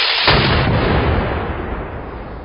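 Gunfire from a rifle salute volley: a loud crackling blast that gives way, about a third of a second in, to a deep rumble that slowly fades.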